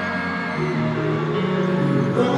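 Live concert music played over an arena sound system, heard from among the crowd: slow, held notes that move to new pitches about half a second in and again near the end.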